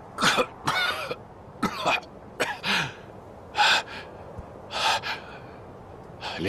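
A man coughing and gasping in about six short, hoarse bursts with brief pauses between, winded and in pain after being beaten to the ground.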